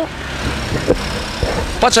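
Steady low rumble and hiss of motor traffic on a street, heard in a short pause between speech, with speech returning near the end.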